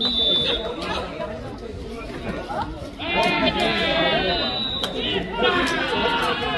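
Players' voices calling out and talking on the court. A loud, drawn-out shout comes about three seconds in and another near the end.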